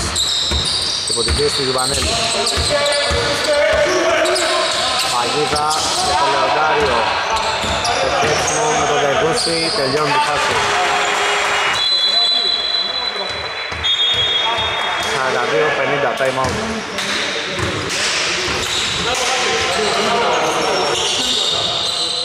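A basketball bouncing on a hall court during play, with repeated knocks, brief high squeaks and shouting voices echoing in the large hall.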